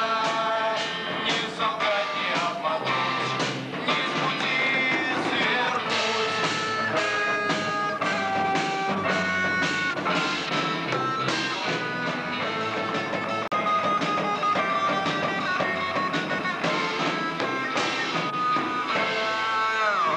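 Live pop-rock band playing: drum kit, electric guitar and keyboard with voices singing held notes over them.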